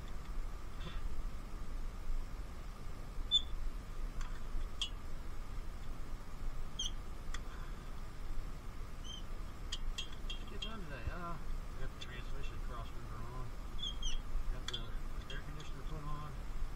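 Scattered light metallic clicks and clinks of a hand wrench working a bolt in a car's engine bay, over a steady faint hum.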